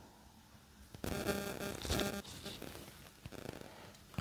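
Handling noise: rustling and scraping for about a second and a half starting a second in, then a few light clicks.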